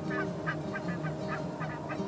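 A flock of geese honking, a quick run of overlapping calls of about four or five a second, over a low steady drone.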